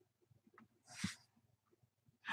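Near silence: room tone, broken by one brief faint sound about a second in.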